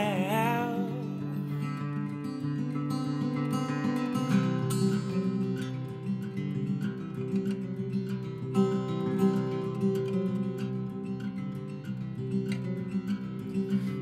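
Acoustic guitar played fingerstyle in an instrumental passage of a song, with the tail of a held sung note fading out in the first second. The bass notes move lower about four seconds in.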